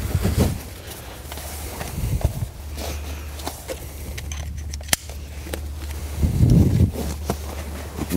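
Strap webbing and buckles on a fabric layout blind being loosened by hand: rustling canvas and webbing with a few sharp clicks, a louder rustling thud about six and a half seconds in, over a steady low hum.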